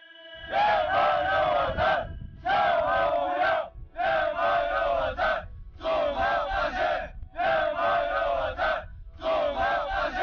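A large group of soldiers shouting a slogan in unison, "祖国放心" ("Motherland, rest assured"). There are about six loud shouted phrases, each about a second and a half long, with short pauses between them.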